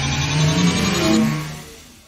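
Electronic intro sting for a logo animation: a rising synthesized sweep with a run of low notes stepping upward, fading away in the second half.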